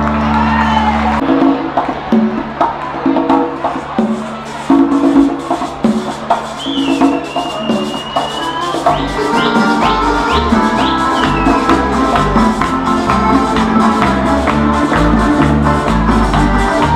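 A Canarian folk band (parranda) playing live: piano accordion, strummed guitars and a laúd over bass guitar and hand percussion, keeping a steady strummed rhythm. The bass comes in stronger about halfway through.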